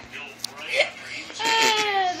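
A dog whining: a short whimper, then from about halfway a long high-pitched whine that sinks slightly in pitch.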